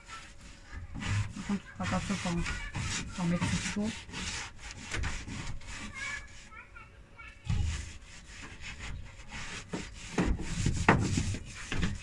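Paint roller rubbing over rough wooden planks in quick repeated strokes, in two runs with a short pause around the middle.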